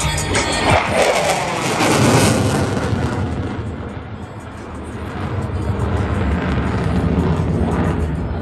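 F-16 fighter jet's engine roaring as it passes overhead. The roar swells about two seconds in with a falling pitch, eases off, then builds again near the end, with music playing underneath.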